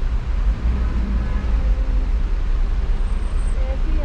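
Steady low rumble of a taxi's engine and the surrounding city traffic, heard from inside the cab through an open window.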